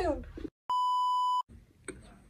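A single steady electronic bleep lasting about three-quarters of a second: a pure, mid-pitched censor-style tone edited into the soundtrack. The sound drops to dead silence just before and after it.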